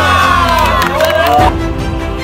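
A group of people cheering and shouting together in a long drawn-out yell, cut off abruptly about one and a half seconds in as music takes over.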